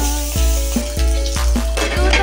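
Diced pork sizzling as it fries in oil in a nonstick wok while a spatula stirs it. Loud background music with a steady beat plays over it.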